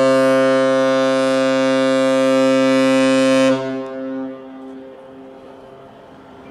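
Deep horn sounding one long steady blast of about four seconds, then cutting off with a short echo trailing behind it: a harbour departure signal for a large container ship leaving port.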